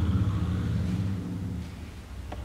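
A low, steady rumble with a few held low tones, loudest at the start and fading away over two seconds.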